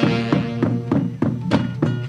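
Andean folk band music: a saxophone section playing over a steady bass-drum beat, about three beats a second.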